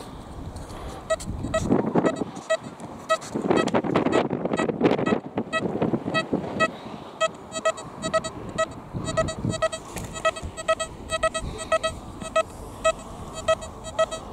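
XP Deus metal detector giving a short, high beep about three times a second as the coil passes over a new £1 coin, which it reads as target ID 88. Bursts of wind noise on the microphone in the first few seconds.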